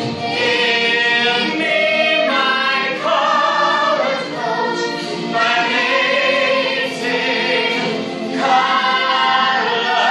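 A cast of children singing together in chorus, a continuous sung melody with phrases changing about every second.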